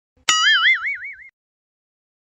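A cartoon spring "boing" sound effect: a sudden twang whose pitch wobbles rapidly up and down, dying away after about a second.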